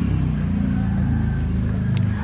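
An engine running steadily with a low drone, and a single sharp click near the end.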